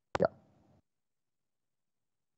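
Near silence, broken only by one brief spoken 'yeah' just after the start, which opens with a sharp click.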